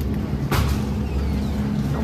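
Steady low hum of supermarket refrigeration, with one sharp knock about half a second in.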